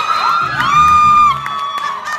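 Dance music playing with a crowd cheering and whooping; a long, high whoop is held through the middle.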